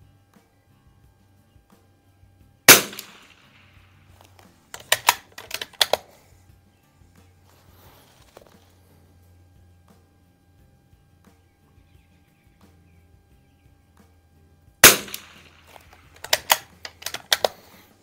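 Two shots from an Anschutz 64 MP .22 rimfire bolt-action rifle, about twelve seconds apart, each ringing briefly. A couple of seconds after each shot comes a quick run of sharp metallic clicks as the bolt is worked to eject the case and chamber the next round.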